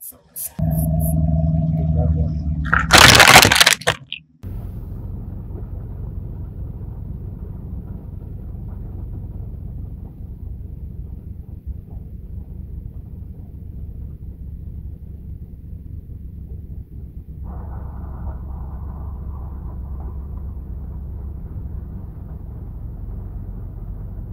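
A loud, sudden crack about three seconds in, then a steady low rumble heard from inside a car cabin, which grows slightly fuller about seventeen seconds in.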